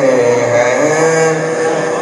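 A man's voice chanting in long, drawn-out melodic phrases through a public-address microphone, in the sung style of a devotional recitation.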